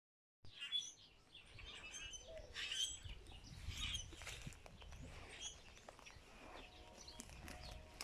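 Small birds chirping now and then, faint, over a low rumble of wind.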